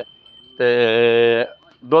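A water buffalo lowing once: a single steady, even-pitched call a little under a second long, starting about half a second in.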